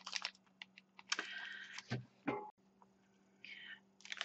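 Faint crinkling and rustling of plastic packaging handled by hand, the clay packet's wrapper and a pack of wet wipes, with scattered light clicks and two short rustles.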